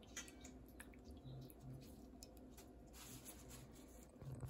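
Near silence: faint squishes and scattered light clicks of hands working wet rose petals in a steel bowl of water.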